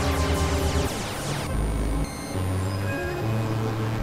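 Experimental electronic synthesizer music. Dense falling high-pitched sweeps cut off about one and a half seconds in, leaving low held drone tones that shift in pitch every second or so.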